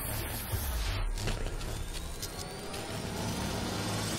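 Intro sound design: a dense rumbling noise bed with heavy bass, and a thin rising whistle about two seconds in. It builds toward a louder hit just after.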